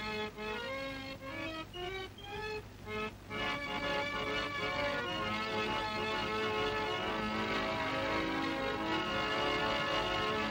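Home-made organ with pipes made from toffee tins and carbide tins, played from its keyboard: a short run of separate notes for about three seconds, then a fuller passage of several notes held together.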